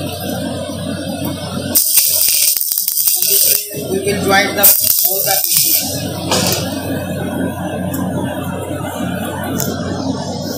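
Stick (manual metal arc) welding on mild steel strip with an MS electrode: the arc crackles and sizzles, loudest in two spells of a second or two about two and five seconds in, over a steady low hum.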